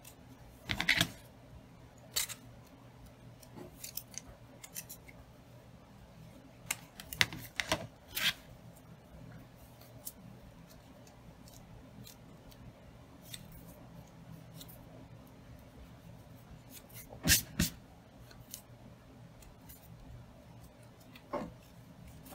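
Scattered short clicks and rustles of hands fitting a braided non-slip elastic band onto a metal duck-bill hair clip under a ribbon bow, with a louder pair of clicks about 17 seconds in.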